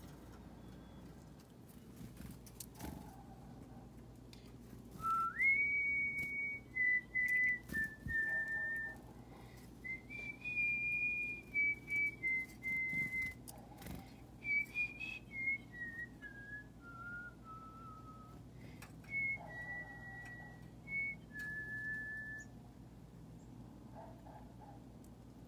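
A person whistling a slow melody in clear single notes, beginning about five seconds in with long held notes. A line of notes then steps downward, and the melody ends on a held note near the end.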